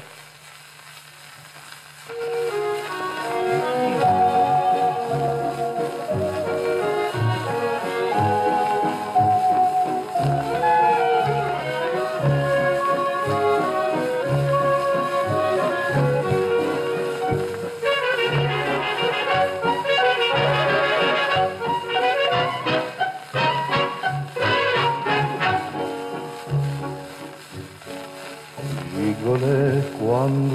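Orchestra with brass playing a song's instrumental introduction over a steady bass beat, starting about two seconds in.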